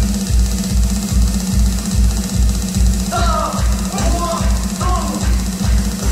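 Drum-driven music for a Tongan men's stick dance: a steady, deep beat of about two and a half pulses a second over a low held tone. Voices call out three times in the middle, and the beat stops at the end.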